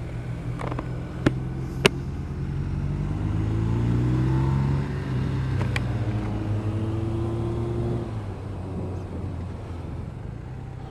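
Motorcycle engine accelerating out of a bend, its pitch rising and its sound building to a peak about four to five seconds in, then easing off. Two sharp clicks are heard about one and two seconds in.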